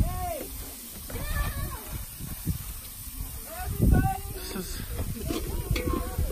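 Steaks and hot dogs sizzling on a steel mesh grill grate over hot coals, a steady hiss, with people talking in the background, loudest about four seconds in.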